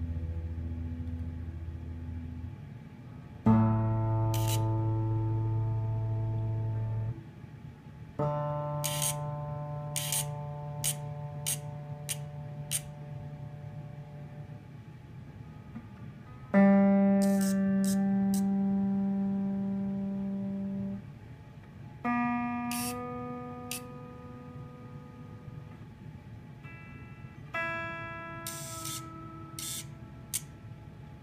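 Gibson Les Paul electric guitar strings plucked one at a time and left to ring, about five notes stepping up from the low strings to the high ones. Short mechanical whirs from the Min-ETune motorised tuners come between and over the notes as they turn the pegs, bringing the deliberately detuned strings into tune.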